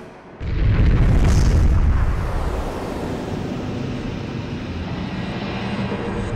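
Cinematic boom sound effect for an animated logo reveal: a deep impact hits about half a second in and rolls into a sustained low rumble.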